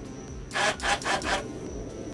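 Four short rasping scrapes in quick succession, lasting about a second in all.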